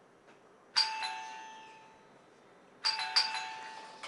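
Doorbell rung twice, about two seconds apart. Each ring is a bright chime that fades out slowly, and the second ring has two quick strikes.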